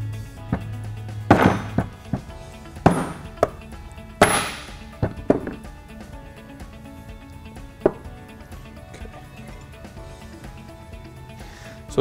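A few sharp mallet blows in the first half, driving the drive coupler out of the aluminium vacuum pump housing, then lighter metallic clinks as the loose parts are handled. Steady background music runs underneath.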